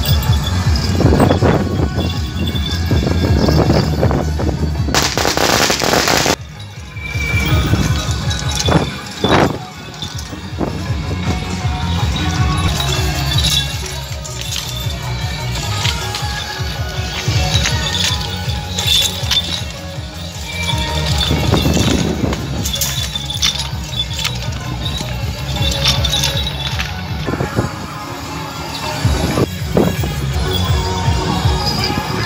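Temple-procession percussion (drums with gongs and cymbals) beating a steady, loud rhythm to accompany a Ba Jia Jiang (Eight Generals) troupe's ritual dance. About five seconds in, a brief loud burst of noise covers everything for just over a second.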